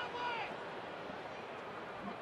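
Steady, low murmur of a ballpark crowd, after a brief trail of voice in the first half second.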